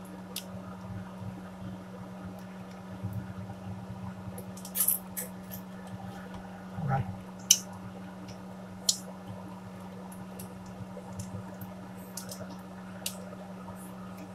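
Food being prepared by hand at a kitchen counter: a handful of sharp clicks and clatters from utensils and containers, the loudest about halfway through, over a steady low hum.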